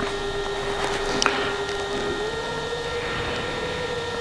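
A steady mechanical hum over a hiss, its pitch stepping up slightly a little over halfway in, with one brief high chirp about a second in.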